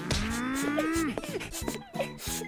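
A long, pitched, voice-like sound that rises and then holds for about a second before dropping away, followed by a few short pitched blips, over background music with a steady beat.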